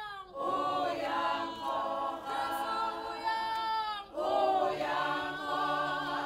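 A group of voices singing unaccompanied in harmony, in long held phrases. The singing breaks off briefly twice, just after the start and about four seconds in, then goes on.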